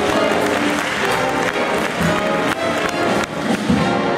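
Jazz ensemble playing a blues tune, with upright double bass, piano and drum kit.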